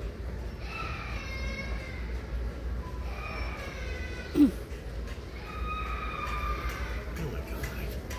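Large-store ambience heard on the move: a steady low rumble with faint distant voices or music. About halfway through there is one short, loud sound that falls in pitch, like a brief yelp.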